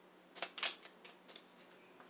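A few quick clicks of tarot cards being handled and shuffled in the hands, loudest about half a second in, followed by a few fainter ticks.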